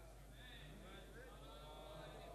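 Near silence: faint voices in a hall, over a steady low hum.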